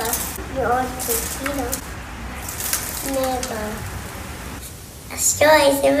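A preschool child speaking Spanish in short phrases, giving a weather report, with pauses between the phrases.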